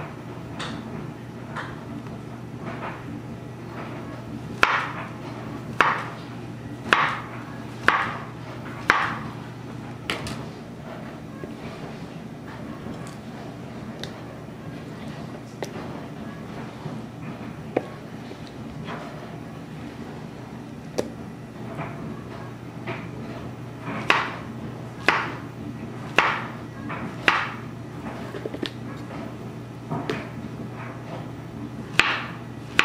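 Knife slicing a banana on a plastic cutting board, with a sharp knock each time the blade meets the board. The knocks come in two runs of about five cuts, roughly a second apart, with a few fainter taps between them.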